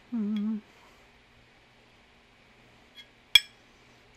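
A brief hummed "hmm" from a woman at the start, then, about three seconds in, a small tick and a sharp metallic clink with a short ring: a metal ruler knocking against an enamelled cast-iron pot lid and its steel knob.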